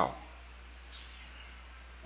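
A single faint computer mouse click about a second in, over quiet room tone.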